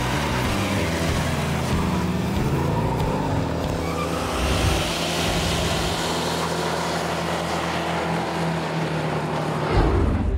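A muscle car's engine revving and running loud at high revs, held steady for most of the time with a rise in pitch a couple of seconds in.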